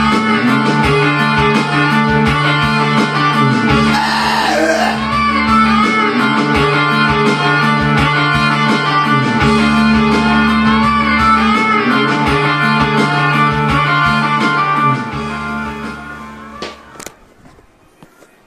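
Karaoke backing track playing a guitar-led instrumental outro, fading out over the last few seconds. A single click near the end.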